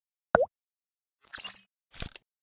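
Logo-animation sound effects: a short, sharp pop about a third of a second in, then two brief swishes.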